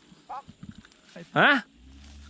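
Speech only: a short spoken exclamation, "ha", about one and a half seconds in, with a couple of faint murmurs before it over a quiet background.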